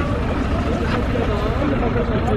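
Voices of several people talking at once in an open public square, over a steady low rumble.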